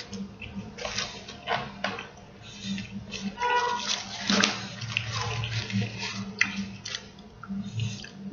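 A person chewing a mouthful of cheeseburger close to the microphone: irregular wet smacking and squishing mouth sounds.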